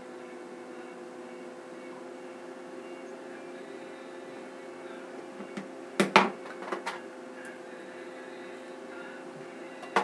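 A steady background hum with a few fixed tones, broken about six seconds in by a quick cluster of sharp clicks and knocks, the loudest sounds here, and one more click at the end.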